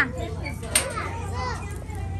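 Indistinct background voices, children among them, over a steady low hum.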